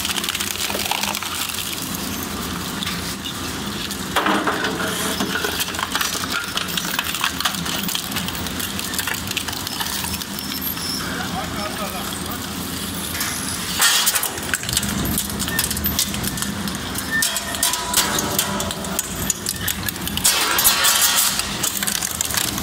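Double-shaft shredder's interlocking toothed rotors tearing up thin metal paint buckets and cans: a steady machine hum under continual crunching, snapping and clattering of sheet metal, with a burst of loud cracks about fourteen seconds in.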